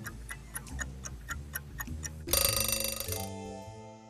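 Quiz countdown timer sound effect: a clock ticking about three to four times a second over light background music, then a bell ringing for about a second, a little past halfway, signalling that time is up.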